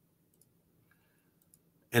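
Near silence with a few faint clicks, then a man's voice resumes just before the end.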